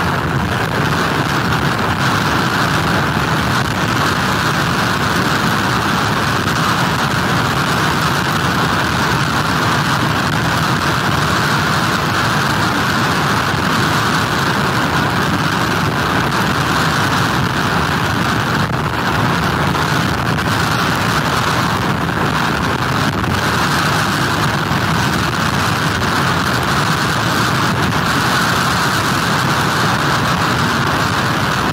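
Steady, loud noise of hurricane wind and heavy surf pounding a pier, with no lulls or separate gusts.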